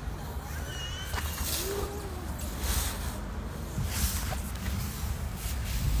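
Outdoor city ambience: a low steady rumble of distant traffic with a few faint bird chirps.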